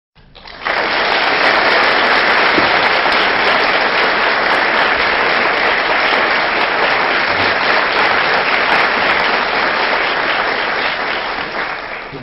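Audience applauding: dense, steady clapping that comes in suddenly and tapers off near the end.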